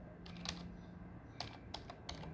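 Computer keyboard keys being typed, about half a dozen faint, separate key clicks as a DOS command is entered.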